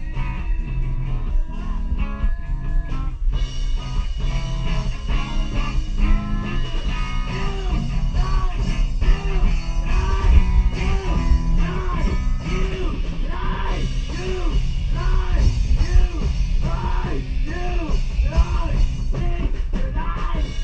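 A rock band playing live in a small room: electric guitar and drums, picked up by a phone's microphone. From about seven seconds in, a quick riff of rising and falling notes repeats over the band.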